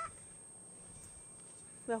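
Quiet outdoor background with a faint, steady high-pitched tone running through it. A voice trails off at the very start, and a man starts speaking near the end.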